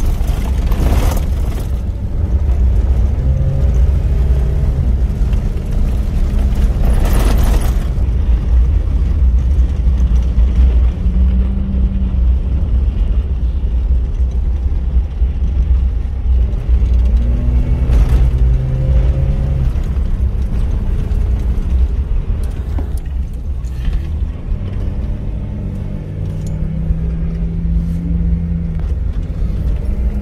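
Off-road vehicle driving over sand dunes, heard from inside the cabin: a steady low engine and drivetrain rumble, with the engine note rising and falling in pitch several times as the revs change. A few brief rushes of noise break in, near the start, around a quarter of the way in and past the middle.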